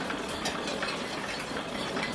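1980s East German gasoline blowtorch burning with a steady rushing flame while its hand pump is stroked to pressurize the fuel tank, the pump clicking faintly with each stroke.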